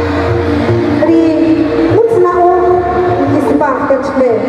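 A woman's voice amplified through a public-address system in a reverberant hall, with long drawn-out tones that ring on.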